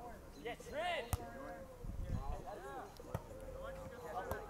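Players' voices calling out during a sand volleyball rally, with sharp smacks of hands hitting the volleyball about a second in and again about three seconds in.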